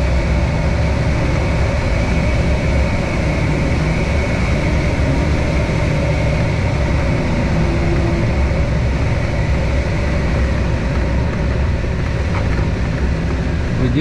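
Steady, deep rush of airflow over a glider's canopy and airframe, heard from inside the cockpit on final approach at about 140 km/h.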